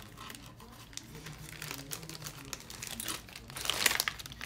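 Packaging crinkling and rustling as it is handled, in irregular crackles, with a louder rustle near the end.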